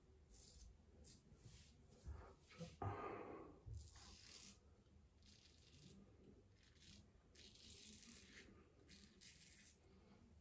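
PAA Symnetry double-edge safety razor scraping through lathered stubble in a run of short, faint strokes, about one every half second. About three seconds in there is a louder, brief rustle.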